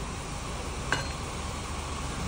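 Steady low background hum with one light click about a second in.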